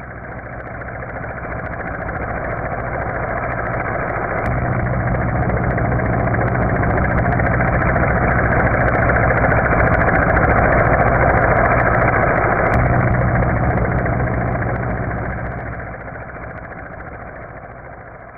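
A steady engine-like hum under a rushing noise, growing louder over the first ten seconds or so and fading toward the end.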